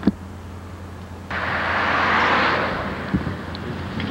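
A sharp camcorder click, then, about a second in, the rushing noise of a passing vehicle cuts in abruptly, swells and fades away over about two seconds, over a steady low hum.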